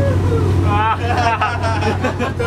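Powerboat engine running steadily at speed, a low drone, with a man's voice talking or laughing over it partway through.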